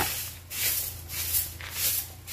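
Stiff stick broom sweeping a gritty concrete path, giving quick scratchy strokes at about two a second.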